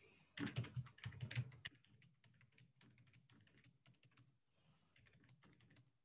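Computer keyboard typing, numbers being keyed into a spreadsheet. A quick flurry of louder keystrokes comes in the first second or so, then lighter clicks follow at an even pace.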